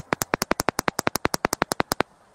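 Rapid, evenly spaced clicking, about eleven clicks a second, on a video call's audio line: crackle from a wired earphone microphone whose connection is faulty or being handled.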